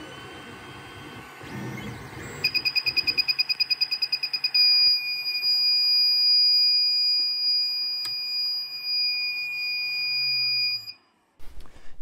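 Creality Ender 3's buzzer sounding the thermal runaway alarm (error E1, printer halted), a sign of a failing hotend thermistor: rapid high beeping, about nine beeps a second, begins a couple of seconds in. After about two seconds it turns into a continuous high-pitched tone over a low hum, and the tone cuts off suddenly near the end.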